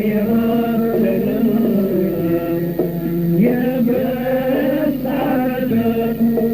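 A man singing a sustained, wavering Arabic vocal line over instrumental accompaniment, in an old recording.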